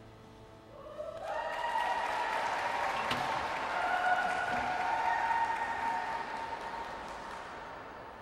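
Audience applause in an ice rink at the end of a skating program, swelling about a second in, holding strong through the middle and fading toward the end.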